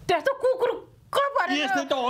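A man imitating a dog with his voice: several quick yelping barks, then a longer howl-like call that rises and falls.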